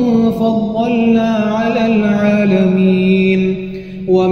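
A male voice reciting the Quran in a melodic, chanted style, drawing out long held notes that step down in pitch and fade away shortly before the end.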